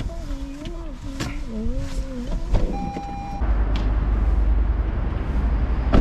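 A wavering tone for about two seconds and a click, then a short steady electronic beep, likely from the car. From about halfway a loud low rumble of wind buffeting the microphone takes over once outside the car.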